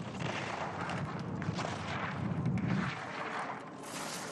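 Racing skis carving and scraping over hard-packed snow through giant slalom turns, a rough, grainy rumble that drops away about three seconds in, leaving a thinner hiss.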